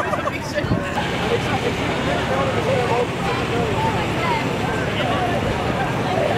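Crowd of people talking at once, many voices overlapping, over a steady low background rumble.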